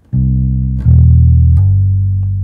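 Four-string electric bass guitar plucked as three single notes in turn, one under a second apart, spelling a C major triad; the last note rings on and slowly fades.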